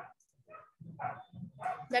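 A person's voice making faint, broken sounds in a pause between words, with a near-silent gap just after the start.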